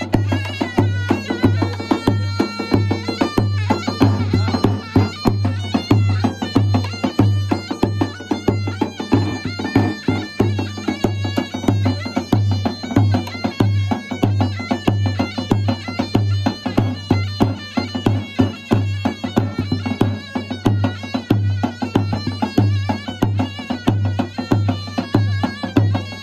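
Live folk dance music: a davul (large double-headed bass drum) beats a steady dance rhythm, about two strokes a second, under a shrill, wavering reed-pipe melody, in the manner of a davul and zurna band.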